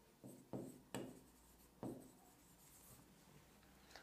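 Faint taps and scratches of a pen writing on an interactive touchscreen board: four short strokes in the first two seconds, then near silence.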